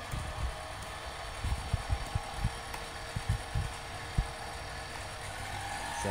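Mini lathe spindle and its motor running under a speed command of 500 rpm from the CNC controller: a steady faint whine. A scatter of short, low thumps comes in the middle.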